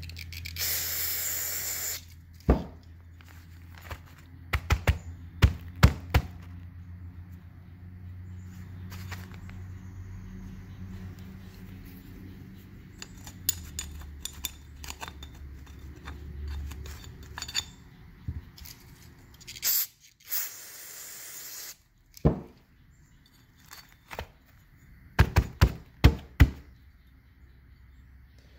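A metal pick clicks and scrapes against the metal of an opened fuel pump body, clearing rust and sediment out of the pump's inlet and valve pockets, with sharp clicks in short clusters. Two hissing sprays of cleaner come near the start and again about two-thirds of the way through.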